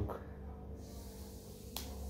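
A single sharp snap near the end as a KitKat chocolate wafer bar is broken in two inside its foil wrapper, over a faint steady room hum.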